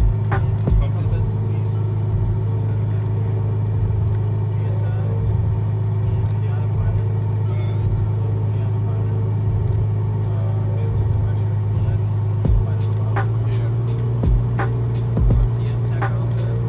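Single-engine piston airplane's engine and propeller running steadily, heard inside the cockpit, with a low drone that steps slightly higher about three-quarters of the way through.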